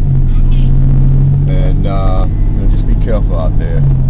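Steady low engine and road drone inside a moving car's cabin, with a man's voice speaking briefly over it twice.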